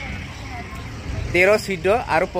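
A person's voice speaking from about a second and a half in, over a low steady rumble.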